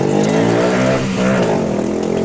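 A car engine revving up from inside the car, its pitch climbing, dropping briefly about halfway through, then climbing again.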